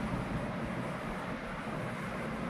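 Steady background rumble and hiss with no distinct sounds in it.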